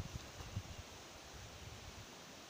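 Faint outdoor background: an even hiss with low rumbling from wind on the phone's microphone.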